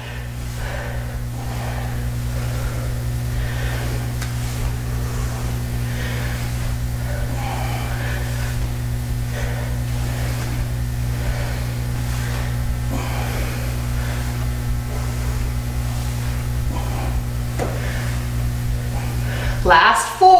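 A steady low hum throughout, with faint, indistinct voices in the background.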